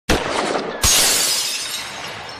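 Shattering sound effect: a first crash, then a louder break a little under a second in, trailing off in a long crumbling fade.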